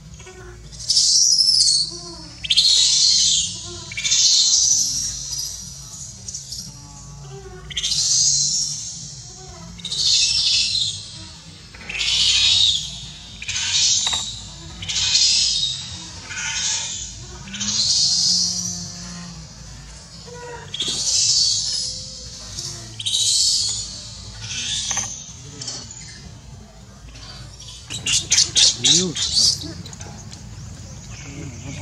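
Baby macaque screaming in repeated high-pitched cries, about one every one to two seconds, ending in a quick run of shrill pulsed shrieks near the end: an infant crying for its mother.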